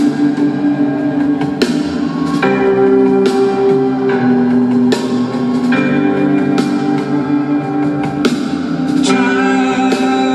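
Live rock band playing an instrumental passage of a slow song: held chords over a steady drum beat, a hit a little under once a second.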